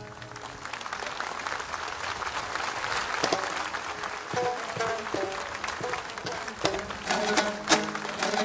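Audience applause after the ensemble's piece ends, an even patter of clapping that thins out over several seconds. Plucked long-necked lutes come in softly about three seconds in, and their notes grow sharper and louder near the end as the next tune begins.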